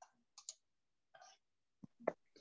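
Near silence broken by a handful of faint, short clicks, the sharpest about half a second in.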